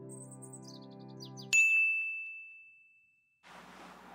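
A held music chord fades out while a quick run of high chirps steps down in pitch. Then, about a second and a half in, one bright ding strikes and its single high tone rings on, fading away over about two seconds.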